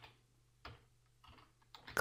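Faint keystrokes on a computer keyboard: about four separate taps, roughly half a second apart.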